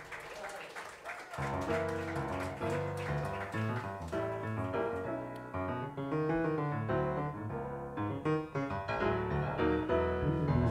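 Grand piano playing a jazz passage in chords and melody, coming in fully about a second and a half in.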